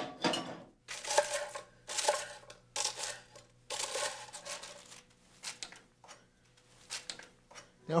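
A knife cutting through grilled bread on a wooden cutting board: a series of short cutting strokes, about one a second, growing sparser near the end.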